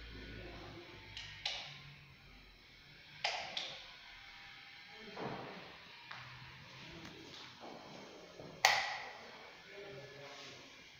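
A handful of short, sharp clicks and taps at irregular intervals, with the loudest one near the end.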